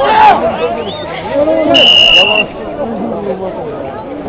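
Crowd of spectators talking over one another, with one short, shrill whistle blast near the middle.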